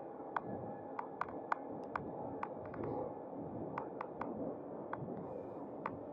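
An e-bike rolling along a tarmac lane: a fairly quiet, steady rush of tyre and air noise, with irregular sharp clicks and rattles from the bike as it runs over the road surface.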